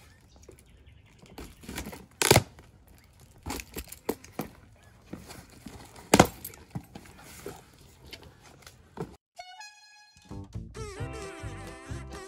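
A metal key scraped along the packing tape of a cardboard box and the cardboard flaps handled, with several sharp knocks on the box, the loudest about two and six seconds in. Near the end the sound cuts out briefly, a short run of pitched tones plays, and background music starts.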